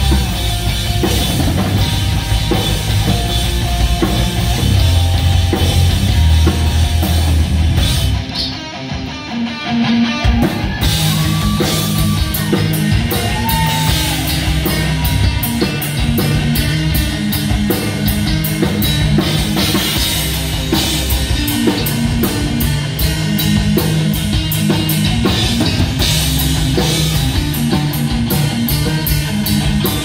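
Live metal band playing: electric guitar, bass guitar and drum kit. The band drops out briefly about eight seconds in, then comes back in at full volume with steady cymbal hits.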